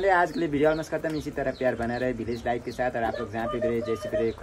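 Speech: people talking close to the microphone, continuously.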